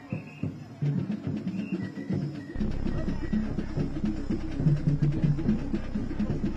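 Traditional ngoma drumming on large wooden drums, a quick steady rhythm of strikes. A steady low hum comes in about two and a half seconds in.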